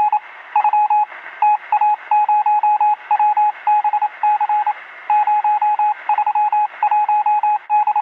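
Rapid electronic beeping, one steady pitch keyed on and off in irregular short and long pulses like Morse code, over a hiss limited to a narrow, radio-like band: an outro sound effect.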